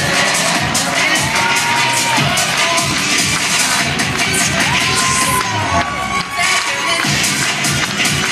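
Loud music for a cheerleading routine, with a crowd cheering and shouting over it.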